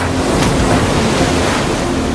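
Waterfall rushing, a steady, loud wash of falling water, with the song's music dropped out.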